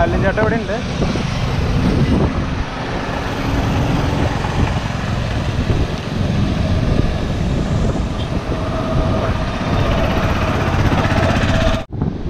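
Wind rushing and buffeting over the microphone of a camera moving along on a bicycle, mixed with road noise.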